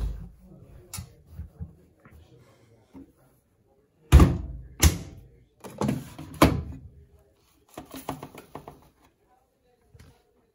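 Bedding pushed into a front-loading washing machine drum, then the porthole door shut with two loud thumps about four seconds in. The plastic detergent drawer is then pulled out with more clunks and a short rattle.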